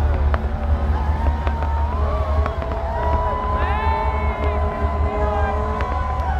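Rooftop aerial fireworks going off in a run of sharp bangs and pops, scattered through the whole stretch, over a steady low rumble and sustained shouting voices.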